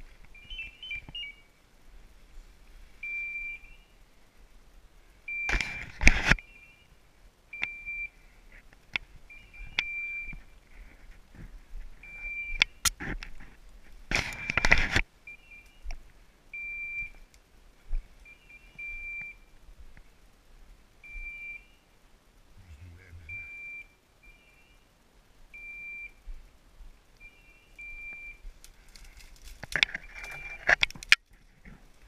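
Electronic beeper on a hunting dog's collar giving short, high beeps every second or two. Loud rustling of brush comes twice, about six and fifteen seconds in.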